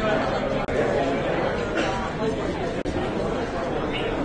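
Crowd chatter: many people talking at once in a room, the voices overlapping at a steady level.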